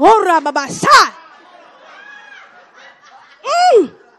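A woman's excited wordless cries into a hand-held microphone: a loud rising-and-falling exclamation at the start and another near the end, with faint voices in the room between them.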